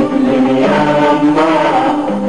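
An Arabic song: voices singing a chant-like melody in long held notes that shift slowly in pitch.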